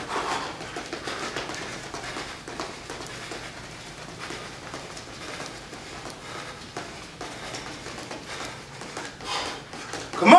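Faint, quick footsteps and sneaker scuffs on a hardwood floor during fast footwork.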